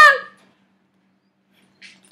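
A young woman's loud, high-pitched squeal of "Ah!", its pitch dropping as it dies away within the first half second. Then quiet room tone with a faint steady hum.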